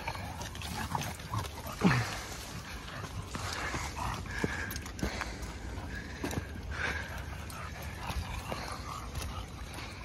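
Dogs giving short, high calls several times, the loudest about two seconds in.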